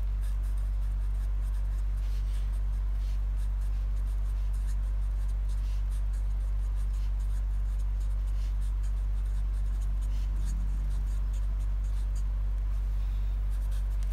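Felt-tip marker writing on paper: faint, short scratchy strokes as words are written out. Underneath, a steady low electrical hum is the loudest sound.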